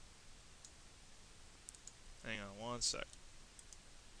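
A few faint, sharp computer mouse clicks: one near the start, a quick group of three a little before the middle, and two more near the end.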